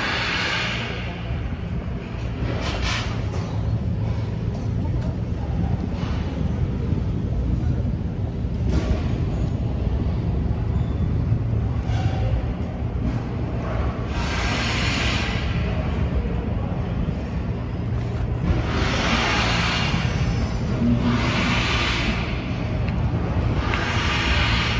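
Very noisy steady low rumble from a construction site next door, with several short bursts of hiss scattered through it.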